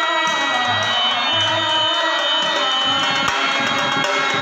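Devotional Hari-Hara bhajan: a man's voice singing long, held lines through a microphone, with a double-headed hand drum keeping a steady beat.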